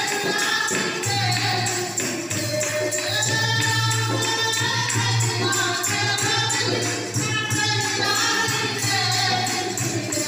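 Women singing a Hindi devotional bhajan to Lord Ram in chorus through microphones, with jingling hand percussion keeping a steady beat and a steady low drone beneath.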